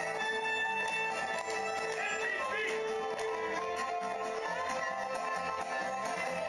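Country-style music with plucked guitar, playing steadily without a break.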